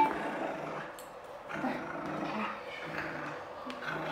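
Siberian husky growling in play during a tug-of-war over a plush squirrel toy, in uneven, low-level bouts.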